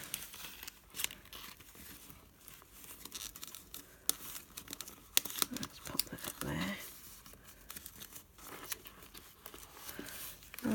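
Paper pages rustling and crinkling, with many small irregular clicks and taps, as hands push a folded paper signature into a journal's twine binding. A brief low murmur from a voice about six and a half seconds in.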